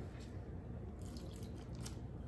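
Quiet kitchen room tone with soft, indistinct handling noise and no distinct event.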